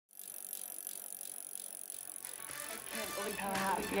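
A mountain bike coasting on a dirt trail, its freewheel ticking over the hiss of the tyres. Music with a singing voice fades in over the second half and is loudest at the end.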